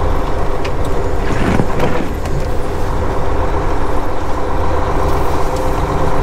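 Semi truck's diesel engine running steadily as the truck rolls slowly, heard from inside the cab as a low drone.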